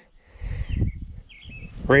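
A few faint, short bird chirps around the middle, over an irregular low rumble.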